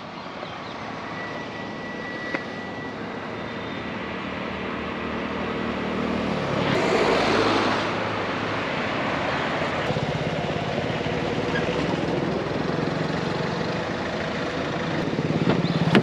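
Road traffic: a steady engine drone, with a vehicle passing close about seven seconds in, the loudest moment.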